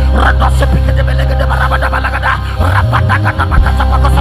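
Rapid, syllable-by-syllable praying in tongues from a man at a microphone, over worship music with deep sustained bass notes.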